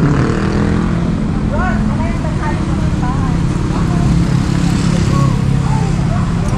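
A motor vehicle engine running steadily, with people talking in the background.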